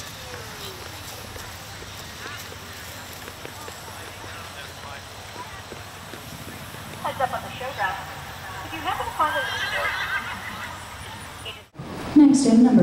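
A horse whinnying, a few wavering calls in the second half, over steady outdoor background noise.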